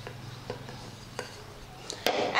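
Wooden rolling pin rolling out a disc of roti dough on a board: a faint, steady low sound with three light clicks as the pin knocks on the board.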